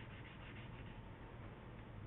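Faint, steady rubbing of drawn shading being smeared on paper to soften a shadow.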